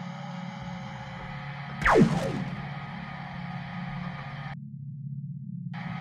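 SainSmart Genmitsu LE5040 laser engraver's gantry stepper motors humming with several steady held tones. About two seconds in, a quick whine falls sharply in pitch as the laser head makes a travel move. The higher tones cut out briefly near the end, leaving only the low hum.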